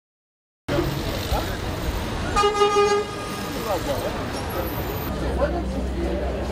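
Outdoor street ambience of passers-by talking over traffic, cutting in abruptly under a second in; a car horn toots once, for about half a second, midway through.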